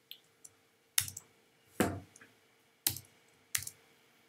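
Four separate sharp keystrokes on a computer keyboard, each with a slight thump, spaced roughly a second apart.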